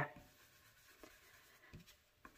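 Faint soft brushing of an ink blending brush over a stencil on paper, with two light taps, about a second in and again near the end.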